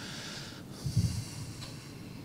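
A man breathing out close to a lectern microphone: a soft breathy hiss, then a short low puff of breath about a second in.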